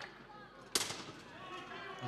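A single sharp metallic impact about three quarters of a second in, with a short ringing tail: a weapon striking steel plate armour or a shield in a full-contact armoured duel.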